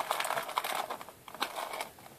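Irregular crinkling and rustling of a Pokémon booster pack's foil wrapper and cards being handled, with a few light clicks, thinning out near the end.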